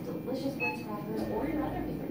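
Indistinct voices talking in the background, with a brief high beep a little over half a second in.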